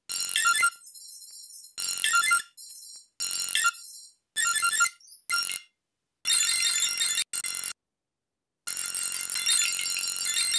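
Synthesizer arrangement played back from a multitrack session in short snatches that start and cut off abruptly, with brief silences between. Near the end it plays on without a break.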